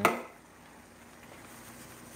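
A single sharp knock right at the start, then the faint steady sizzle of sliced onions cooking in oil in a frying pan.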